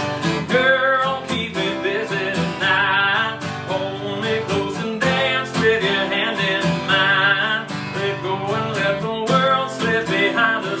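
Dreadnought acoustic guitar strummed in a steady rhythm, with a man singing over it.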